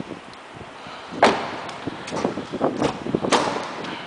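A 2009 Nissan Maxima's rear passenger door being pushed shut with a thud about a second in, followed by lighter knocks and a sharp click a little over three seconds in.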